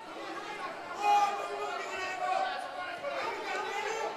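Many voices talking and calling out at once in a large hall, a crowd of lawmakers with no single speaker standing out; one voice rises louder about a second in.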